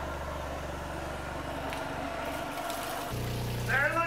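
Large loudspeaker driven by a tone generator at a low frequency of about 24 Hz, giving a steady low hum, with the hiss of water spraying from the hose that the speaker shakes. The hum shifts higher in pitch about three seconds in.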